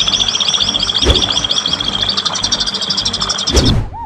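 A bird giving a fast, evenly spaced trill of short high chirps, about eight or nine a second, which stops just before the end, over background music.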